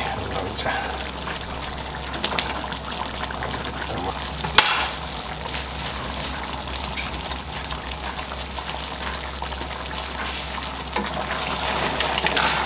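Pork rib gravy sizzling and simmering in a frying pan as chunks of capsicum, onion and tomato are dropped in, with a steady low hum underneath. A single sharp knock about halfway through is the loudest sound.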